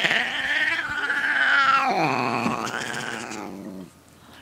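A domestic cat yowling: one long, drawn-out cry whose pitch drops about two seconds in, fading out just before the end.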